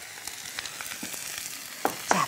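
Napa cabbage and sliced onion sizzling in oil in a hot cast-iron pan: a steady hiss with a few faint crackling clicks.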